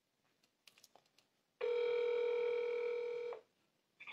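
Telephone ringback tone through a mobile phone held on speaker: one steady beep lasting a little under two seconds, starting about a second and a half in. It is the sign that the call is ringing and has not yet been answered.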